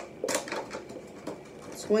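Clear plastic takeout container being handled, giving light clicks and crinkles of thin plastic, with one sharper crackle about a third of a second in.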